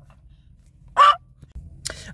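One short vocal sound, a single brief call about a second in, over a low steady hum.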